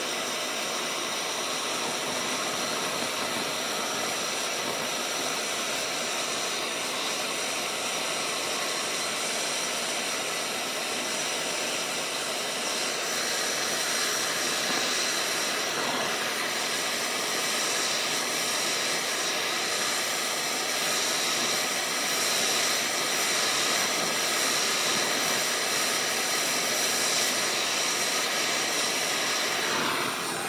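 Handheld gas blowtorch burning with a steady hiss as its flame heats a 5 mm thick steel angle bar so that it can be bent. A little louder from about halfway through.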